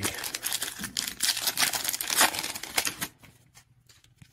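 Plastic trading card pack wrapper crinkling and tearing as it is ripped open by hand, a dense run of crackles that stops about three seconds in.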